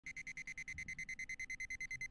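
Quiet, rapid high-pitched electronic beeping, about eight short beeps a second on one steady tone, like an alarm clock, as the intro of a noise rock track.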